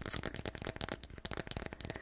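Fingers tapping rapidly on the back of a smartphone in its case, a fast, uneven patter of small clicks.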